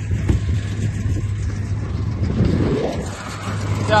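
Tractor engine running steadily while pulling a working square hay baler, a constant low drone with mechanical clatter from the baler.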